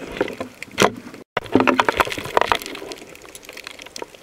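Underwater sound picked up by the camera: irregular clicks and crackles over water noise. The sound cuts out for a moment just over a second in, then comes back as a louder, busier stretch of clicking and water noise.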